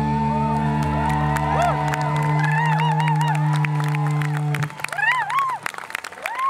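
A live rock band's closing chord held and ringing, then cut off about four and a half seconds in, while the crowd whistles and whoops.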